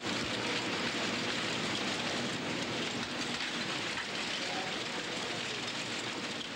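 Printing and typesetting machinery running: a steady, dense, rapid mechanical clatter with a hiss over it.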